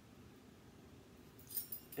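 Quiet room tone, then near the end a brief jingle of small metal measuring spoons being handled.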